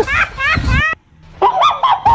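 A budgerigar squawking in a rapid string of short, rising chirps, with a brief break about halfway through.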